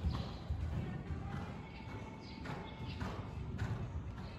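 Hoofbeats of a horse cantering on the sand footing of an indoor riding arena, a run of low thuds.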